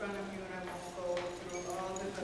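Indistinct talking in a meeting room, with a light click about a second in.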